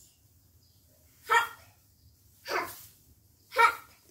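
A dog barking three times, short barks about a second apart.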